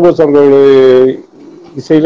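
A man singing without accompaniment: a long, steady held note about a quarter-second in that lasts just under a second, a short pause, then the melody picks up again near the end.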